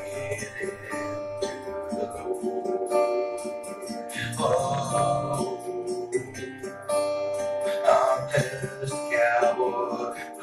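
Instrumental break of a country song: acoustic guitar strumming sustained chords, played back from a multitrack recording.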